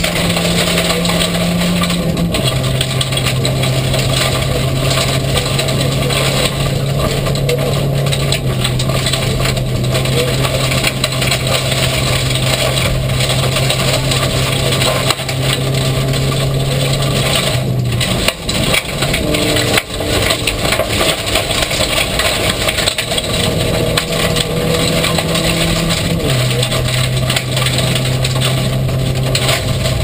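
Inside the cabin of a VW Golf rally car at speed on a gravel stage: the engine is run hard under load, with gravel and road noise over it. The engine note steps up and down in pitch a few times. The loudness dips briefly about eighteen to twenty seconds in.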